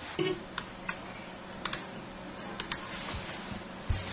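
About eight irregular, separate clicks of computer keys being pressed, some in quick pairs, over a faint steady low hum.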